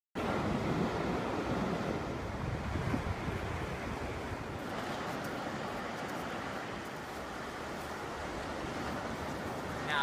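Ocean surf washing onto a beach with wind on the microphone: a steady rushing noise, a little stronger in the first few seconds.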